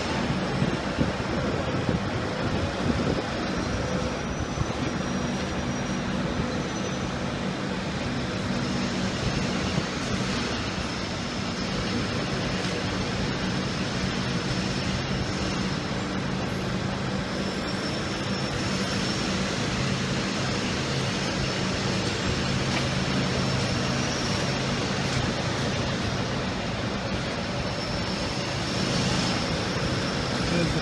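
Steady low drone of a fire truck's diesel engine idling, over the noise of city street traffic.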